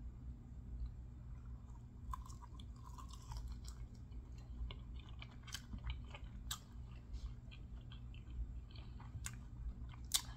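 A person chewing a mouthful of chicken wing dipped in blue cheese dressing, close to the microphone, with scattered soft clicks and crunches over a low steady hum.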